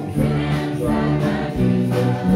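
Live gospel song: two women singing together with acoustic guitar and piano accompaniment.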